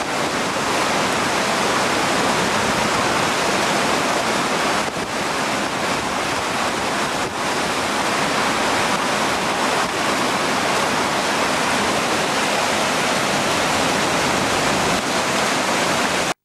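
Steady loud rush of turbulent water churning out below a hydroelectric plant at a river weir dam.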